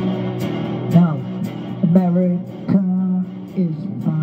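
Les Paul-style electric guitar played through a small combo practice amp, strumming and holding chords, with a man's voice singing over it in long, bending notes.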